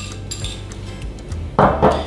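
Background music with a steady bass line, over light clinks of a metal whisk against a stainless steel saucepan as cream is poured into milk. A brief louder sound comes near the end.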